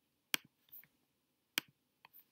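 Two sharp computer mouse clicks, about a second and a quarter apart, with a few fainter clicks just after each.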